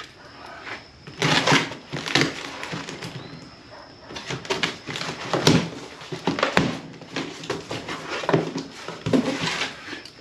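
Scissors slitting the packing tape on a cardboard box, then the cardboard flaps being pulled open: a run of irregular scrapes, rustles and clicks.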